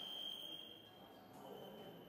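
Electronic fencing scoring machine sounding its steady high-pitched buzzer tone, the signal of a registered touch; the tone breaks off briefly just over a second in and then comes back.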